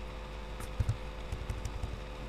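Computer keyboard keystrokes: a short cluster of soft, low thudding taps starting a little over half a second in, over a steady low electrical hum.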